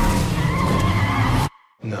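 A car skidding, its tyres squealing loudly for about a second and a half before the sound cuts off abruptly.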